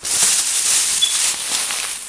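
Thin plastic grocery bag rustling and crinkling close to the microphone, a loud, steady hiss-like crackle.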